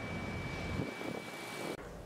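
Street traffic on a wide city boulevard, cars passing, with a thin steady high whine over it; it cuts off suddenly near the end.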